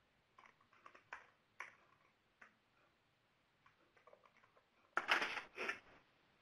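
Faint, scattered clicks of a computer keyboard being typed on, with a brief louder noise about five seconds in.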